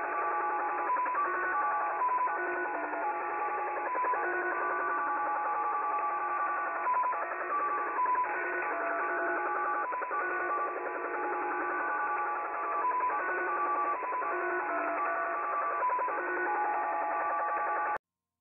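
The Japanese 'Slot Machine' digital shortwave signal, heard in upper sideband through a web SDR receiver: a continuous run of short tones hopping quickly between many pitches over band hiss. It is an unidentified signal of unknown purpose.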